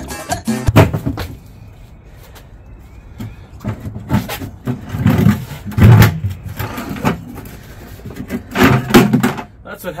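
Heavy thumps and knocks from a car tire and rim being forced together by hand and foot, one loud hit about a second in and a cluster of them in the second half.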